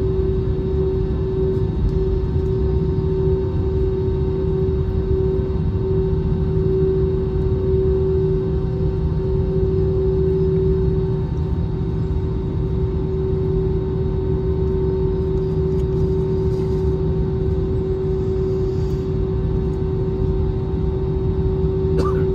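Cabin noise of an Airbus A320-family jet taxiing, its engines running at low taxi power: a steady rumble with a constant droning hum.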